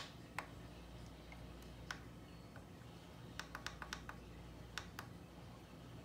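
Faint clicks of the small plastic arrow buttons on a handheld wireless baby monitor, pressed to pan and tilt the remote camera. A few single presses come first, then a quick run of about six clicks in the middle, then two more.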